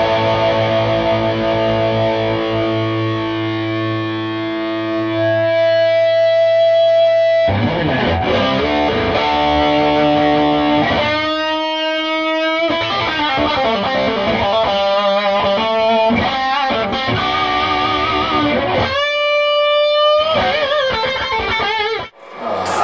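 Fender Stratocaster played straight into a Cornford Carrera valve amp with no pedals and a touch of the amp's reverb. A long ringing chord gives way to riffing, with two held lead notes played with vibrato, one about halfway and one near the end.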